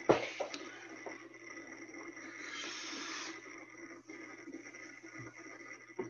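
A steady breathy hiss with a sharp click right at the start, swelling for about a second in the middle.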